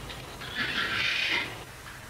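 Pen scratching on paper: a dry, scratchy hiss lasting about a second.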